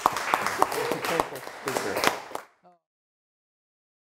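Audience applauding, with a few voices mixed in, which cuts off abruptly about two and a half seconds in.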